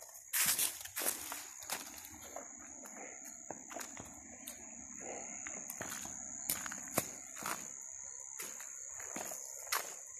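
Footsteps crunching over dry leaf litter, sticks and rock, irregular at one to two steps a second. A steady high-pitched insect trill runs behind them.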